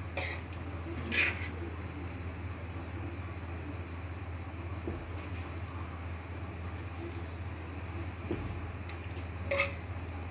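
A steady low hum with a few short, light clinks of kitchen utensils: two about a second apart near the start and one near the end.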